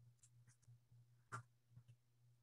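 Near silence: a faint low hum with a few soft clicks, the loudest about one and a half seconds in.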